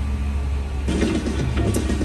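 Steady low rumble of a moving open-sided tour tram. About a second in, laughter joins it.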